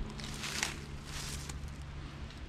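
Footsteps shuffling through dry fallen leaves, a few soft uneven rustles.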